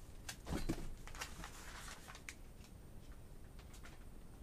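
Off-screen handling sounds: scattered light rustles and clicks, with one louder soft thump about half a second in.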